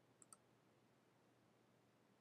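Computer mouse button clicked once, heard as two faint ticks a tenth of a second apart, in near silence.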